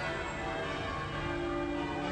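Cathedral bells ringing, many overlapping tones sounding steadily together.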